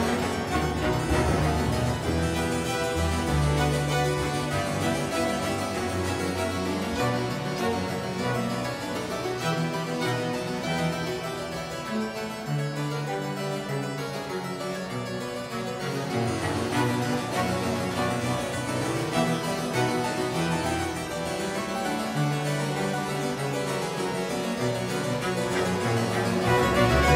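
A two-manual harpsichord made by Jan de Halleux of Brussels, playing baroque music in dense, continuous runs of plucked notes, with held low notes sounding beneath.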